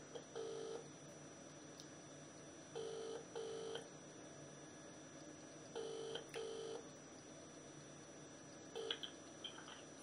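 Telephone ringback tone from a mobile phone while a call rings out: the double 'burr-burr' ring of a New Zealand line, two short tones about every three seconds, heard faintly three times. A last short burst comes near the end, just before the call is answered.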